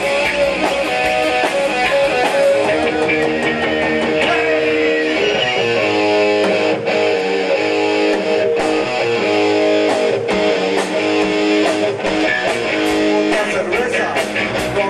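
Live rock band led by electric guitars playing held, ringing chords, loud and steady. The deep bass thins out from about five seconds in to near the end, with a few sharp hits in the middle stretch.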